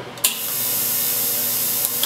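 Electronic igniter of a BC-3300 coffee roaster's gas burner firing: a click, then a steady high hiss that cuts off suddenly near the end. With no gas connected, the burner does not light.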